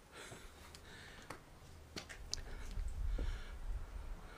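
Faint handling noise between songs: scattered light clicks and knocks as an acoustic guitar is settled on a seated player's lap at a microphone, over a low rumble that swells a little past the middle.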